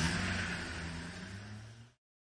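A vehicle engine running steadily close by, a low hum with faint steady tones; the sound cuts off abruptly just before the end.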